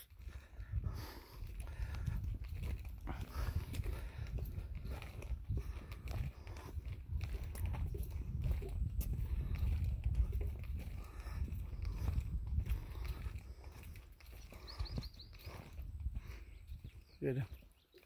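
Wind buffeting the phone's microphone as a low rumble, with footsteps on a dirt track.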